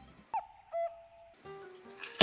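A short whistle-like sound effect: a quick falling swoop, then a held tone lasting about half a second. Soft background guitar music comes back near the end.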